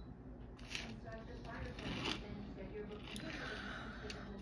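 Faint speech in the background, with a few light clicks and rustles of small objects being handled.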